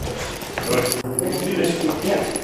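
Indistinct voices with metallic keys jangling and clinking.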